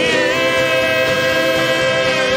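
Live worship band holding a long sustained chord, with a woman singing one held note over it; the pitch slides briefly into place near the start, then stays steady.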